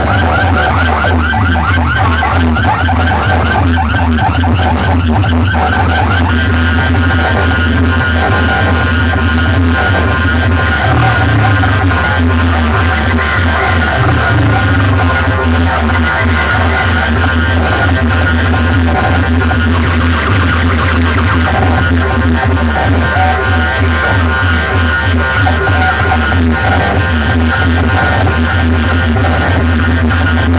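Very loud electronic dance music blasting from large outdoor DJ speaker towers, with a heavy bass line running throughout.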